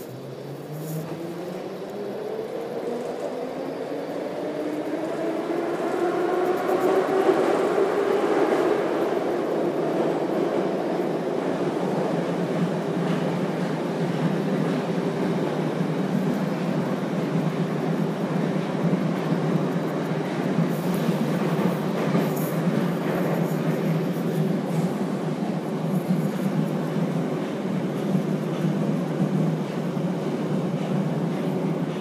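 Metro train accelerating out of a station, heard from inside the car: a traction-motor whine rises in pitch and grows louder over the first eight seconds or so, then settles into steady running noise at speed.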